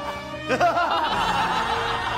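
A film villain and his henchmen laughing together in a big mock-evil group laugh, bursting out about half a second in, over background music.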